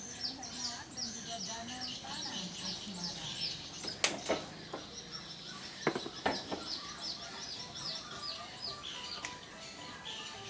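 A small bird chirping over and over, two or three short falling chirps a second. A few sharp clicks from hands handling wires and toggle switches come around four and again around six seconds in.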